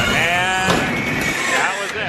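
A voice making drawn-out, wavering sounds, with a long call that slides down in pitch near the start.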